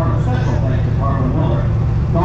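Stock car engine idling with a steady deep rumble while the car sits still, with a public-address announcer's voice echoing over it.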